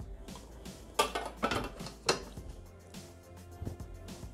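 Stainless-steel Thermomix mixing bowl clanking about three times, about 1 to 2 seconds in, as it is tipped out and handled back into the machine, over quiet background music.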